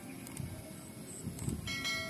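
A quiet stretch with a few soft clicks, then a ringing chime starts about three-quarters of the way in: the click-and-bell sound effect of a subscribe-button animation.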